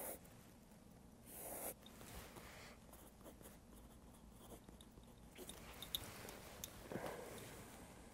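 Quiet scratching of a pen tracing around a stockinged foot on a paper pad, with a brief swish about a second and a half in, a few small ticks, and another swish near the end.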